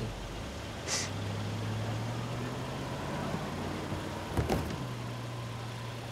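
Low, steady hum of a car engine idling, with a short sharp click about four and a half seconds in.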